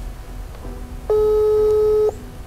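Telephone ringback tone over a smartphone's speakerphone: one steady ring about a second long, starting about halfway in, as an outgoing call waits to be answered.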